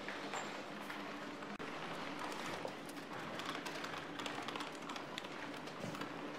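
Office room sound: scattered light taps and clicks, like keyboards and desk work, over a steady low hum.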